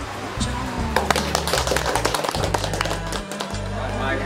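A small group of people clapping their hands in scattered, uneven claps that start about a second in, over background music.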